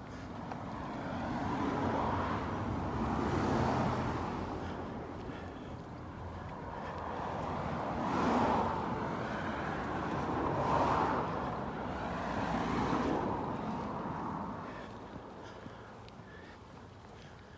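Road traffic: about five cars pass one after another, each a swell of tyre and engine noise that rises and fades over a couple of seconds.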